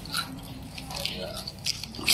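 Mouth chewing crispy shredded potato sticks, a few soft crunches spread through the moment.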